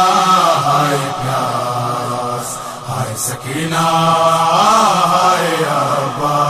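Voices chanting a nauha, a Shia Muharram lament, in two long phrases of held notes with a short break about three seconds in.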